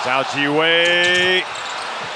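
A man's long, drawn-out call, held for about a second, over the steady noise of an arena crowd.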